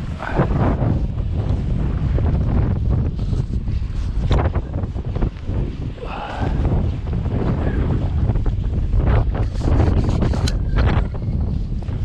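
Wind buffeting the microphone in gusts, with surf breaking in the background and a few short knocks from handling the gear.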